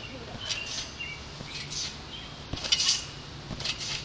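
Trampoline springs squeaking and clinking faintly and irregularly as a child bounces on the mat, with a soft knock about two and a half seconds in.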